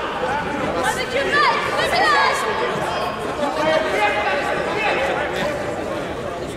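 Several people's voices chattering over one another, with a few voices rising higher and louder between about one and two and a half seconds in.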